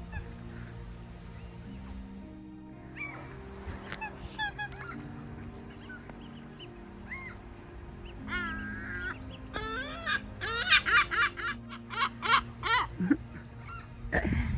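Gulls calling: a few scattered calls at first, then a loud, rapid series of yelping calls in the second half, over soft background music of sustained notes.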